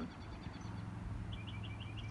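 A small bird chirping faintly, a quick run of short high chirps starting a little over a second in, over a low steady hum.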